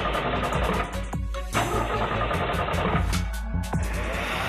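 A car engine cranking over and over without catching, stopping briefly twice: the car will not start. Dramatic background music plays over it.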